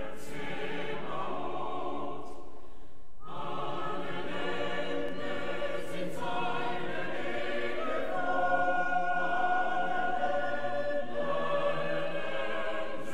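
A choir singing a sustained choral piece, with a brief break between phrases about three seconds in.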